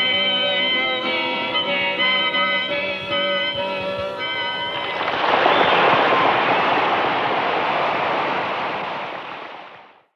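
Live solo acoustic guitar and harmonica playing the close of a song, recorded from the audience. About five seconds in the music gives way to audience applause, which fades out to silence at the end.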